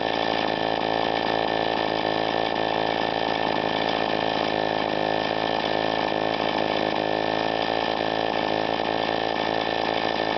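A 1950s Power Products model 1000 two-stroke gasoline engine, all-aluminum and throttle-governed, running steadily with a buzzy two-stroke note that holds an even speed with only a slight waver.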